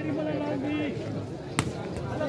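A volleyball struck hard by a player's hand once, a sharp smack about one and a half seconds in, over crowd chatter and a long held voice call.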